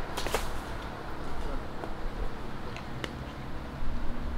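Wind rumbling on the microphone, with a few faint clicks and rustles.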